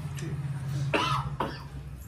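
A man coughing into his hand, the main cough about halfway through, over a low steady hum.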